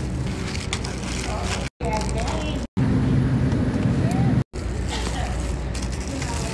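Supermarket background noise in several short clips spliced together with abrupt cuts: a steady low hum with faint voices, and a louder low rumble in the middle section.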